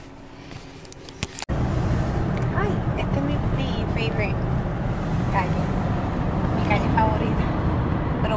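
A few light clicks in a quiet car cabin, then, about a second and a half in, the steady rumble of road and engine noise heard from inside a moving car, with faint voices over it.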